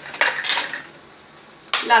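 Brief clattering and rustling as paper-craft pieces and a small card box are handled and set down on a cutting mat, a quick cluster of light knocks and clicks in the first second.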